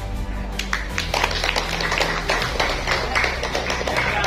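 A small group of people clapping, starting about a second in, over steady background music.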